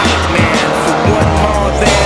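Hip hop music playing over a car engine revving as it takes a corner on the track, its note gliding up and down.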